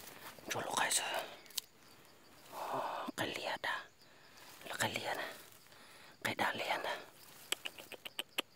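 A person whispering in four short phrases, each about a second long and a second or two apart.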